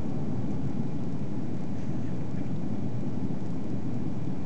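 Steady low rumble of engine and airflow noise heard inside the cabin of an Airbus A340-300 airliner, seated over the wing, as it flies low on approach.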